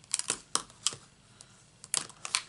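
Plastic alcohol-marker barrels (Stampin' Blends) clicking and knocking against each other and the desk as they are handled and set down in a row. There is a quick cluster of sharp clicks just after the start, single clicks about half a second and a second in, and another cluster near the end.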